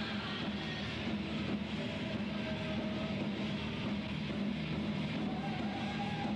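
Live heavy metal band playing: distorted electric guitars and drums in a dense, unbroken wall of sound, with a few held guitar notes, recorded muddily on a camcorder microphone.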